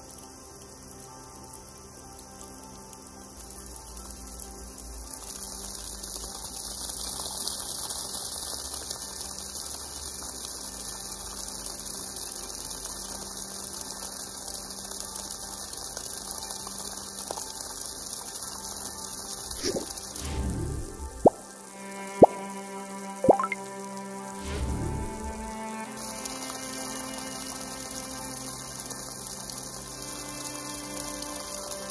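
Background music over the steady splash of water pouring from a homemade PVC hand pump's outlet onto wet ground. A few sharp knocks come about two-thirds of the way through.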